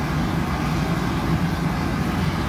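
Steady low rushing noise of a glassblowing studio's gas-fired glory hole furnace and its blower running, with no strikes or changes.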